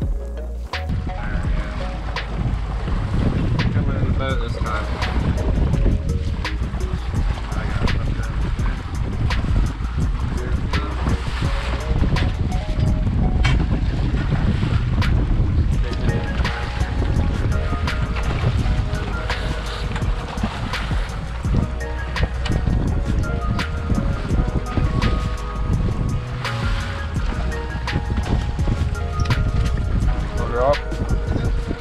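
A small outboard boat running through choppy sea, with water rushing and slapping against the hull and wind buffeting the microphone, over background music.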